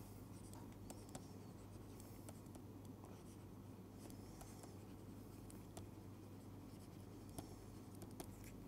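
Very faint scratching and light tapping of a stylus writing on a tablet, with scattered small ticks over a steady low hum.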